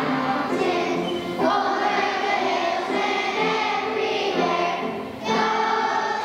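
Children's choir singing together, the phrases held out with a brief breath pause about five seconds in.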